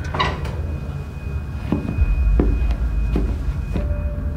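A door opens with a short noise at the start. Then a suspense film score holds a thin high tone over a deep rumble, with soft knocks about once a second. A lower tone comes in near the end.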